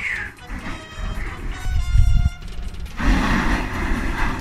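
Kerosene flame jetting from a homemade garden-sprayer flamethrower, burning in low rumbling gusts, with a steady rushing noise setting in near the end.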